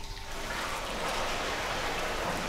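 Liquid running in a steady, even rush.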